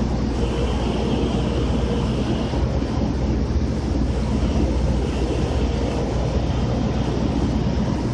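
Steady low drone of heavy machinery with a constant deep hum, and a faint higher whine over it in the first few seconds and again weakly later on.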